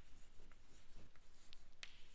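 Chalk writing on a blackboard: faint, short taps and scratches as letters are drawn.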